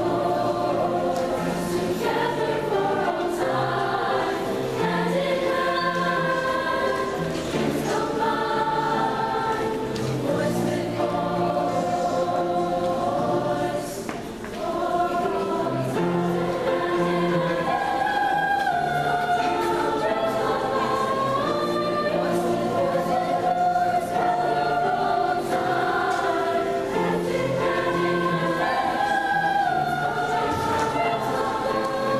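A girls' choir singing with piano accompaniment, sustained vocal lines over low piano notes. The sound drops briefly about halfway through, then the singing resumes.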